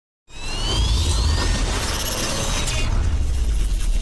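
Edited-in dramatic sound effect: a rising whoosh over a deep bass rumble, cutting in just after the start.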